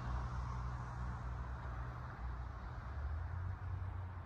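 Steady low rumble and hum of distant road traffic.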